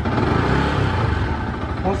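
Yamaha sport motorcycle engine idling with an even low beat, briefly blipped to higher revs in the first half, then settling back.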